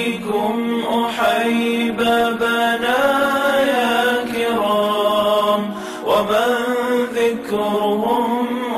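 Arabic devotional nasheed sung in a chanting style, the voice drawing out long ornamented, gliding phrases over a steady low drone.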